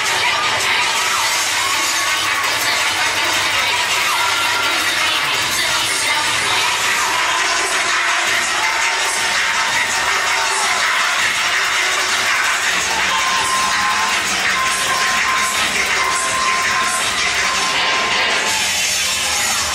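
A crowd of children and adults cheering and shouting over loud dance music, steady throughout.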